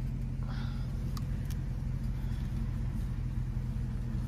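Car engine idling, a steady low hum heard from inside the cabin, with a couple of light clicks a little over a second in.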